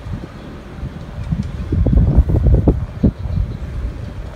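Wind buffeting the phone's microphone: an uneven low rumble of gusts, strongest in the middle.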